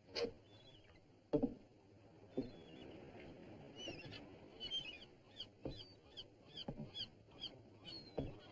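A few dull, heavy thumps about a second apart, and from about halfway in a quick run of short high chirps, about three a second, like a small bird calling.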